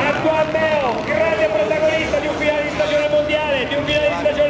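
Dirt bike engines revving, their pitch rising and falling with the throttle, under a man's voice on the public-address system.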